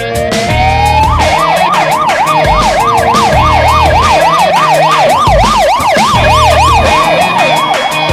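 An emergency vehicle siren winds up over about a second, then switches to a fast yelp of about three up-and-down sweeps a second, fading near the end, over background music with a steady beat.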